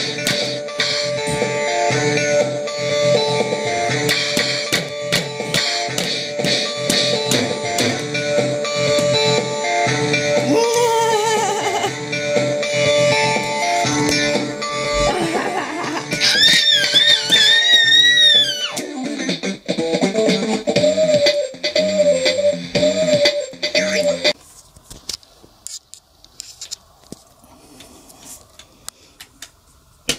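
A toy electronic drum pad playing a recorded song with a beat and melody, with hand slaps on its pads. The music cuts off suddenly about 24 seconds in, as if the toy has switched off, leaving only faint tapping.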